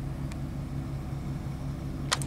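Steady low drone of an idling semi-truck engine, heard inside the cab.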